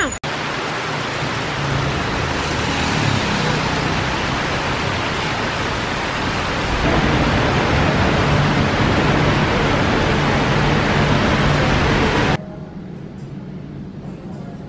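Heavy rain pouring steadily onto wet pavement, with a low hum of road traffic underneath. It cuts off suddenly near the end, giving way to quiet indoor room tone.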